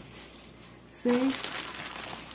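Thin plastic bags crinkling as gloved hands separate and handle them, starting about a second in.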